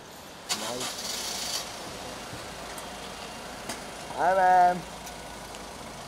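A car engine starting about half a second in and then running at idle. A brief, loud pitched tone comes about four seconds in.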